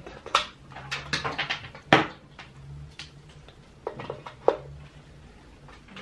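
Irregular clicks, knocks and rustles of objects being handled close to the microphone, over a faint low steady hum.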